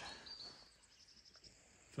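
Near silence: faint open-air ambience, with a faint high bird chirp near the start.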